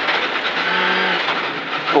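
Rally car at speed on a gravel stage, heard from inside the cabin: a steady loud din of engine and tyre noise, with a brief held engine note about half a second in.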